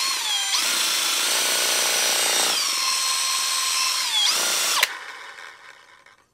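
Makita cordless drill spinning a homemade ABS-pipe spray paint can shaker, with the can's mixing ball rattling inside. The motor whine rises as it spins up, holds steady with a slight drop in pitch about halfway, then winds down and stops near the end.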